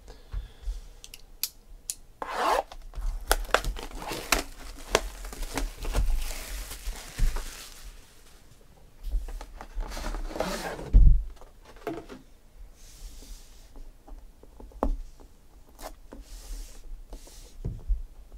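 Plastic shrink wrap being torn and crinkled off a boxed trading-card case, followed by the cardboard box being rubbed, slid and handled, with irregular scrapes and clicks. A sharp knock about eleven seconds in is the loudest sound.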